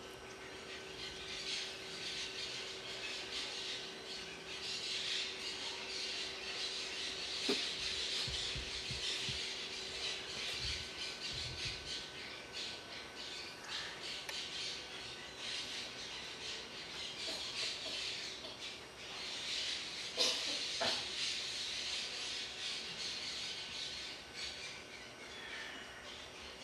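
Many birds chirping and squawking in a continuous dense chatter, with a faint steady hum beneath and a couple of brief knocks.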